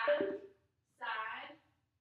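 A woman's voice in two short bursts, separated by silence: speech only.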